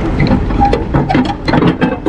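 Several metallic clanks and knocks as tow gear is handled on a wrecker's steel diamond-plate deck, over a low steady rumble.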